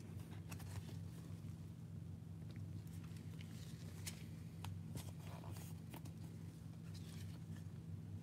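Faint scattered clicks and light rustling from handling sleeved trading cards and plastic card holders, over a steady low hum.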